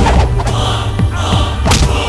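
Film fight-scene punch sound effects: a heavy thud as it starts and another sharp hit near the end, over a loud background score with sustained low notes.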